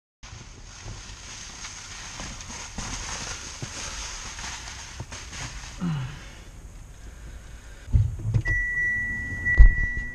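Handling and rustling inside a parked car over a steady hiss, with a few thumps in the last two seconds, the loudest just before the end. A steady high-pitched tone starts about a second and a half before the end and keeps going.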